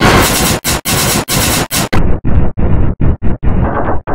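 Harsh, heavily distorted and clipped effects audio, an edited logo sound pushed into noise, chopped into short fragments by several brief dropouts a second. About halfway it turns muffled as the treble is cut off.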